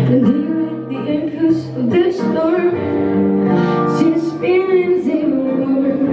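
Live acoustic pop performance: a woman singing over strummed acoustic guitar and a piano sound from a Nord Electro 6 stage keyboard.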